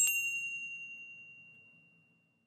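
A single bell-like ding, struck at the start and ringing on one clear high tone that fades away over nearly two seconds: the chime of an animated logo ident.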